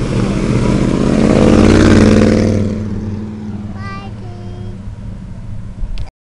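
A car's engine accelerating hard past, growing loud to a peak about two seconds in, then fading to a lower drone as the car pulls away.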